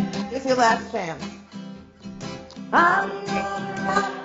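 A woman singing to her own strummed acoustic guitar. A long sung note slides down about a second in, and a new phrase starts near the three-second mark.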